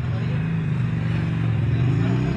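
A motor vehicle's engine running, a low steady hum whose pitch starts to rise near the end.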